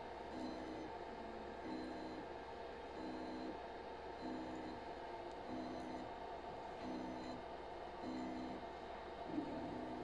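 Stepper motors of a 3D-printer-based pick-and-place machine giving seven short two-note whines about 1.2 seconds apart as the nozzle is turned step by step through its rotation calibration. A steady machine hum runs underneath.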